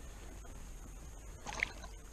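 Faint lapping of water around a small boat, with one short squeak about one and a half seconds in.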